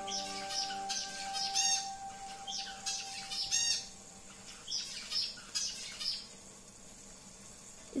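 Birds chirping: short, high calls come at irregular intervals and thin out after about six seconds. A steady tone fades away over the first few seconds.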